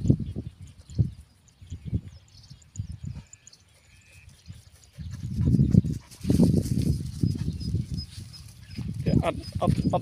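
Footsteps of someone walking across dry grass: low thuds about once a second, then a denser stretch of rumbling and handling noise.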